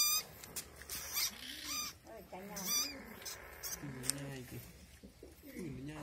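Young chồn đèn civets in a wire trap cage squealing in three short, high-pitched, quivering bursts in the first two seconds as a dead mouse is pushed in to them, followed by low wavering calls.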